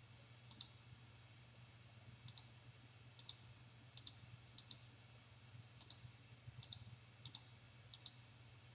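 Faint computer mouse button clicks, about a dozen spread through, some in quick pairs, as drop-down options are chosen.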